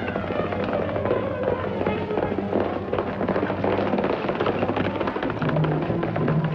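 Horses galloping: a fast, dense clatter of hoofbeats, under background music.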